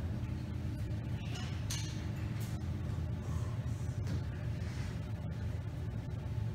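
Quiet hall room tone: a steady low hum with a few faint clicks and rustles as the big band readies its instruments, before the next tune begins.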